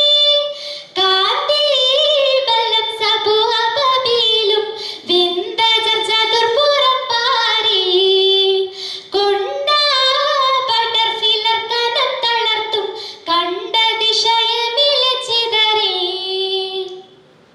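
A schoolgirl singing solo into a stage microphone: one voice carrying a melody that glides and bends between held notes, with short pauses between phrases.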